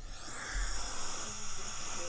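Steady white-noise hiss from a home recording played back on a phone, starting about half a second in. It is an electronic voice phenomenon recording, in which listeners hear a faint voice within the noise.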